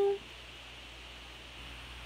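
A woman's held sung note ends just after the start, followed by a pause between sung lines with only faint, steady room hiss.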